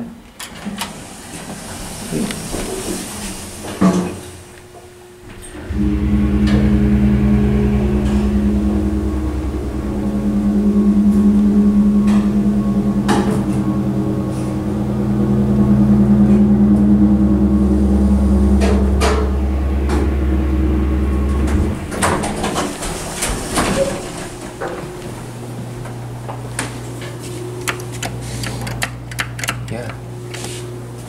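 Dover dry-powered hydraulic elevator's pump motor starting with a sudden steady hum about six seconds in, running for about sixteen seconds with the car travelling, then cutting off. A few sharp clicks come before and after the run, and a quieter low hum follows near the end.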